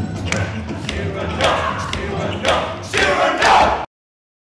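Several men shouting and yelling in a staged fight, with sharp knocks and thuds between the cries. The shouts grow loudest in the last second, then cut off suddenly just before the end.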